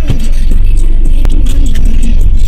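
Background music with a heavy bass line.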